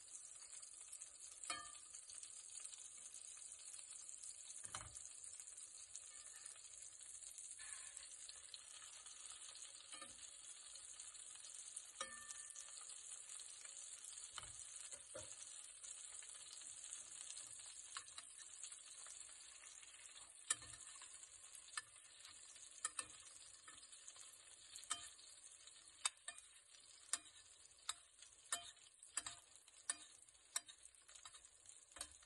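Steak frying in foaming butter with thyme and garlic in a stainless steel pan: a faint, steady high sizzle with scattered small pops. Over the last several seconds, sharp clicks come about once a second.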